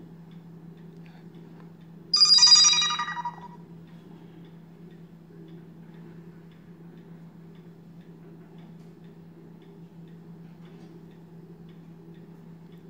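A short electronic chime from a Kospet Hope smartwatch as it powers down to reboot: several bright tones together about two seconds in, lasting over a second and fading out. A faint low steady hum sits underneath.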